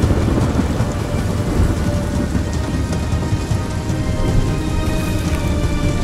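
Thunderstorm sound effect: steady heavy rain with a low thunder rumble, over faint background music.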